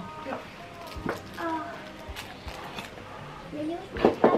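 Low background voices in short snatches, with a couple of light clicks.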